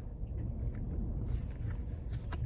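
Steady low rumble inside a car cabin, with a few faint clicks of trading cards being handled.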